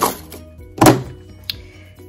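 A single dull thunk a little under a second in, an object set down on the hard work surface, followed by a faint short click about half a second later.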